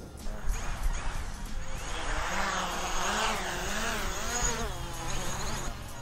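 DJI Mavic Pro quadcopter flying close by with its propellers buzzing. The pitch wavers up and down as the motors speed up and slow down.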